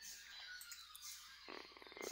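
Near silence: room tone between spoken sentences, with a faint, brief low rumble in the last half-second.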